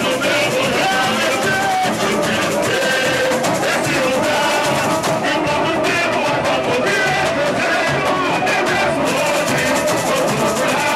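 Samba school drum section (bateria) playing a live samba rhythm: surdo bass drums, snare drums and other hand percussion, steady and loud throughout, with a singer on a microphone over the drums.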